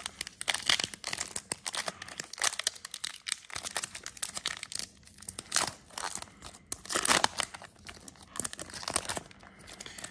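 Foil wrapper of a Pokémon trading-card booster pack being torn open and peeled by hand: a continuous run of small crinkles and crackles, with louder tearing rips every couple of seconds.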